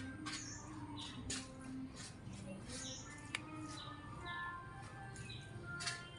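Quiet background music, with short clicks and scrapes of wooden chopsticks stirring rice noodles in a styrofoam box. One sharper click comes about three and a half seconds in.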